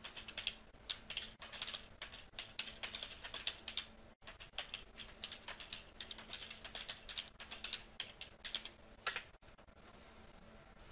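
Fast typing on a computer keyboard, a quick run of keystroke clicks with a brief break about four seconds in, stopping shortly before the end.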